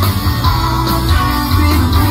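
Live rock band playing loud through a concert PA: electric guitars over bass and drums, in a steady, unbroken groove.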